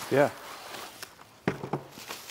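A steering wheel in a plastic bag being lifted out of its cardboard box, with faint rustling of the plastic and one sharp knock about a second and a half in.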